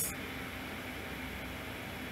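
Steady background hiss of room tone, an even, featureless noise with no distinct events.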